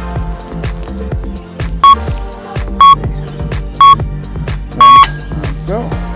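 Workout interval timer beeping the end of a countdown: three short beeps about a second apart, then a longer beep that marks the start of the next exercise. Background music with a steady beat plays under them.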